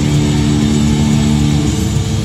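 Live hard rock band, distorted electric guitars and bass over drums, holding a loud sustained chord.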